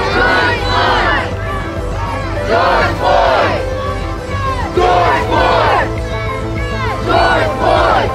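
A marching crowd of protesters chanting together, a loud shouted phrase about every two seconds.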